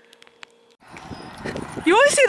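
Quiet indoor room tone with a faint steady hum and a few light clicks. It changes abruptly to outdoor ambience with a voice starting near the end.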